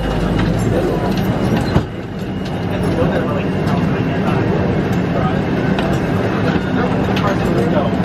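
Boeing 777 cabin at the gate: a steady hum under indistinct passenger chatter, with one sharp thump just under two seconds in.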